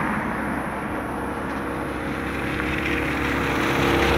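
Road traffic: a car that has just passed fades away at the start, then another car approaches from behind with its tyre and engine noise growing louder toward the end.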